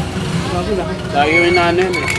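Speech: a man's voice talking at a meal table, in murmured words that aren't clearly made out, over a low steady background hum.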